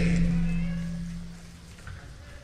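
A steady low hum-like tone that fades away over the first second and a half, leaving a quieter room.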